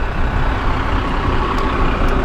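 Yutong coach's diesel engine idling, a steady low rumble.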